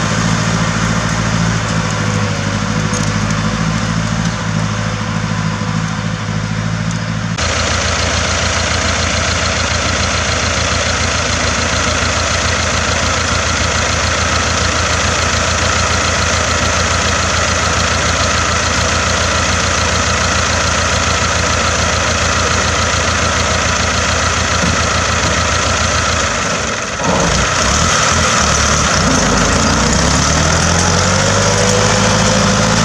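Tractor engine running steadily under load as it pulls a plough and harrow through the soil. The sound changes abruptly about seven seconds in, and near the end the engine note dips briefly and then rises.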